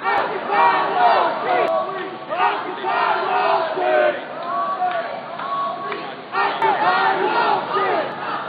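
Crowd of protesters, many voices shouting and yelling over each other, easing off about five seconds in and rising again loudly a second later.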